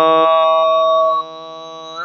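A man's voice holding one long chanted note in Arabic religious recitation, steady in pitch, falling away to a softer level about a second in.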